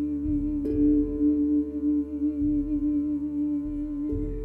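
A woman's voice humming a long held note with a slight vibrato over the ringing of a tongue steel drum, with a new drum note struck less than a second in. Soft low drum beats sound underneath, three times.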